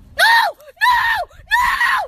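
A person screaming: three loud, high-pitched wails in quick succession, each about half a second long and rising then falling in pitch.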